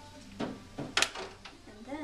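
Two short spritzes from a trigger spray bottle of heat-protectant spray onto hair, the second one louder.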